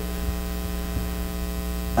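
Steady electrical mains hum: a low, even drone made of several steady tones, with no change through the pause.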